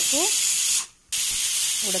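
Aluminium pressure cooker whistling on a gas stove: steam hissing loudly out of the weight valve once the cooker is up to pressure. Two blasts, with a short break just before a second in.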